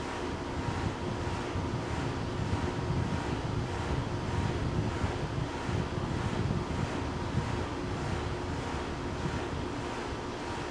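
Wind buffeting an outdoor microphone: a steady low rumble, a little stronger through the middle, over faint steady hum tones.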